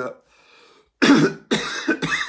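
A man coughing: two sharp coughs about half a second apart, starting about a second in, with a third following right after.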